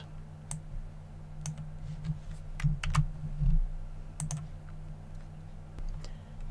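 A handful of sharp, irregularly spaced clicks from a computer mouse during desktop work, over a steady low hum.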